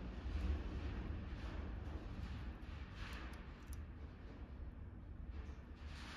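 Quiet workshop room tone with a steady low hum, and faint light scraping and clicks about halfway through as a thin steel feeler gauge is slid into a piston ring's end gap in the cylinder bore.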